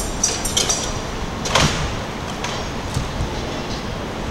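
Steady outdoor city background noise with a quick run of high metallic clinks that stops within the first second. A single whooshing sweep comes about a second and a half in, followed by a couple of faint clicks.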